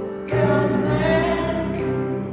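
Mixed choir of men and women singing sustained chords in close harmony. A new sung phrase enters about a third of a second in and is held through.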